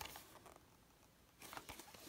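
Near silence, with faint rustles and light taps of a small cardboard figure box being turned over in the hands, once at the start and again about one and a half seconds in.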